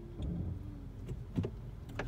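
Low, steady rumble of a car heard from inside its cabin while it creeps along in slow traffic, with a couple of faint clicks a little past the middle.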